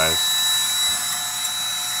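Cordless drill spinning a brake-cylinder hone inside the bore of a 1965 Corvair's single master cylinder: a steady whine with a constant high tone as the hone scrubs the bore to clean up rust.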